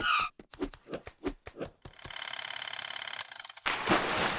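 Sound effects for an animated title: a quick run of pops and clicks, then a steady rapid buzzing rattle about two seconds in, ending in a sudden whoosh-like swell near the end as music starts.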